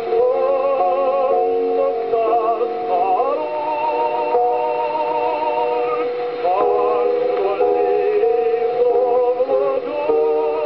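Acoustic-era 78 rpm record of a ballad playing on a gramophone: long held notes with a wavering vibrato and a few changes of pitch, thin in the bass and with no treble above about 5 kHz.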